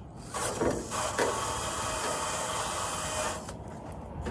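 Cordless drill driving a paint-stripping attachment against a car fender: a rough abrasive scrubbing that starts just after the start and stops shortly before the end.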